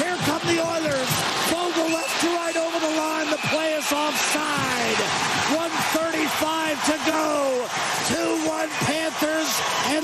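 Radio play-by-play commentary: a man calling the game excitedly at a raised pitch, without pause, over a steady wash of arena crowd noise.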